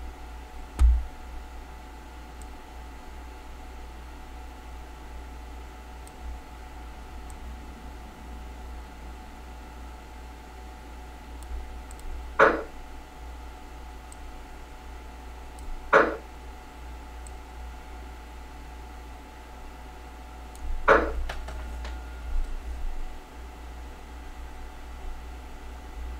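Steady low electrical hum and room noise of a home desk setup, broken by a low thump about a second in and three short sharp sounds spread through the middle and later part, the last followed by a few smaller ones.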